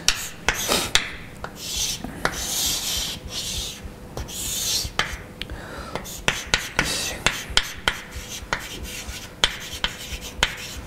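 Chalk writing on a blackboard: hissy scratching strokes in the first few seconds, then a run of sharp, irregular taps as the chalk hits and lifts off the board while letters are written.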